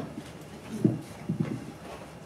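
A few short hollow knocks and bumps, one about a second in and two close together just after, as a classical guitar is picked up and handled.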